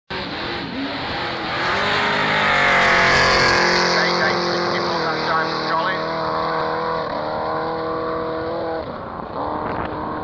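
Race car accelerating hard down a drag strip, its engine note holding high and then dropping at each upshift, several gear changes in all. Loudest about 3 s in, then gradually fading as it pulls away down the runway.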